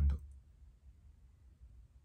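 A man's voice finishing a word, then near silence: faint low room hum.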